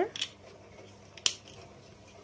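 Plastic interlocking toy blocks clicking as a block is pressed onto a stack: a short click just after the start and a sharper single click a little past one second in.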